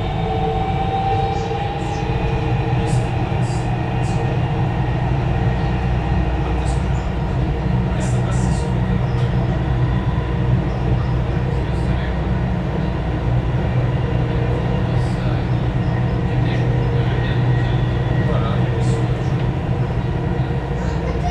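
Dubai Metro train running along elevated track, heard from inside the carriage: a steady low rumble with a constant hum and faint whine from the drive.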